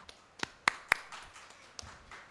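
A few sharp, irregular hand claps, four in all, the loudest two in quick succession in the first second, with fainter scattered clapping between.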